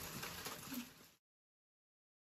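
Faint kitchen background noise with a few light clicks and taps for about a second, then the sound cuts off suddenly to dead silence.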